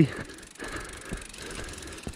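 Mountain bike rolling along a dirt trail: steady tyre and frame noise with a few light knocks and rattles.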